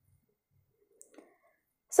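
Near silence with two faint, short clicks about a second in, a fifth of a second apart. A woman's voice starts right at the end.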